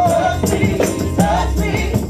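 Live gospel praise music: women's voices singing together over a steady drum beat, keyboard and a shaken tambourine.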